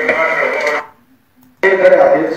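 Speech from a video playing on a laptop, heard through its small speaker. It cuts out abruptly a little under a second in and resumes suddenly at full level about 1.6 s in, as the playback is skipped ahead.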